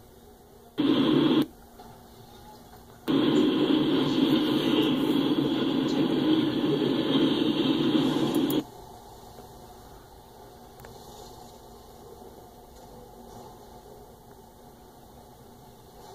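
Freight train cars rolling past, heard as a rough rushing noise through thin, band-limited stream audio that cuts in and out abruptly: a brief burst about a second in, then a longer stretch from about three seconds to past eight seconds, with only faint hiss between.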